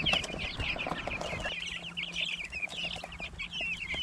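A flock of three-week-old broiler chicks peeping constantly, many short high chirps overlapping.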